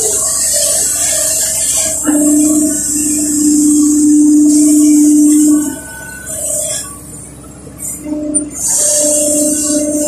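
Kobelco SK140 excavator with its Mitsubishi D04FR diesel engine, heard from inside the cab, running under digging load. A steady whine from the engine and hydraulics is loudest from about two to nearly six seconds in, as the bucket is driven into wet mud, and eases off after that.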